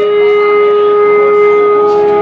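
Electric guitar amplifier feedback: one loud, steady, pitched tone held without a break, with fainter overtones above it.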